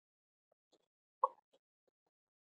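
Near silence, broken by one faint, very short blip about a second in.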